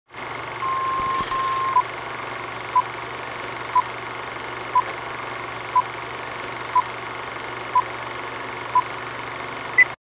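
Film-leader countdown sound effect: a steady film hiss with a long beep tone, then a short beep once a second, eight times, ending in a single higher-pitched beep before it cuts off suddenly.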